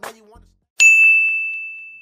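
A single ding: one sharp strike about a second in, then a clear high ringing tone that slowly fades away.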